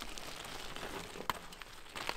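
Mountain bike tyres rolling over a loose gravel trail, a faint crackly crunch, with a single sharp knock partway through.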